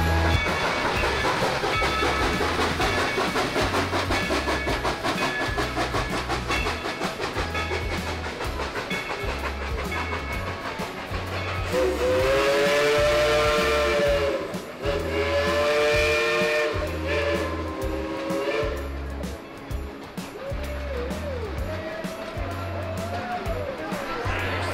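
The Dollywood Express narrow-gauge steam locomotive passing with a steady rhythmic chuffing, then two long blasts of its steam whistle about halfway through, each bending slightly up and down in pitch. Shorter, fainter whistle sounds follow.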